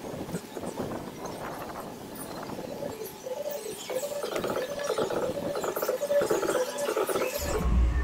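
Busy outdoor noise full of small clicks and rustles from walking with the camera, joined about three seconds in by a run of pitched notes that step from one to the next, like a tune.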